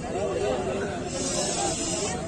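Background chatter of people's voices, with a steady high hiss that starts about halfway through and lasts about a second.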